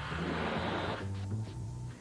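Black & Decker Firestorm cordless drill driving a screw, a grinding whirr over a low steady hum, which gives way about halfway through to the low hum alone. Music plays underneath.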